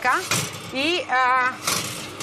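Speech: a woman's voice talking in short phrases, with no other clear sound.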